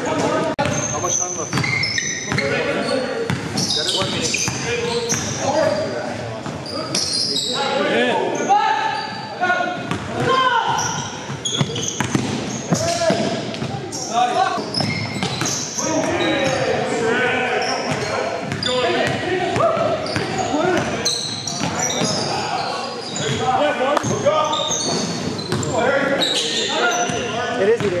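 A basketball dribbled and bouncing on a gym floor during play, with sharp thuds scattered throughout, among players' indistinct shouts and calls echoing in a large gymnasium.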